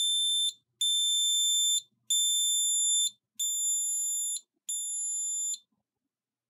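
Scantronic SK-1L keypad sounding the SC-800 alarm panel's exit-delay warning: a steady high-pitched beep about a second long, repeated with short gaps, five times. The beeping stops shortly before the end as the exit delay runs out and the system arms.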